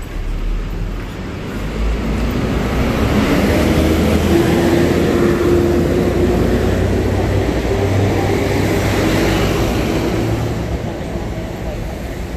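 City bus engine running as it drives past close by, growing louder over the first few seconds and fading near the end, with a steady whine over a low rumble.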